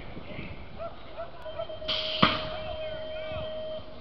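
A BMX starting gate drops: a steady electronic tone sounds and, about halfway through, the gate comes down with one loud, sharp slam while the tone holds on for over a second. Faint voices can be heard beforehand.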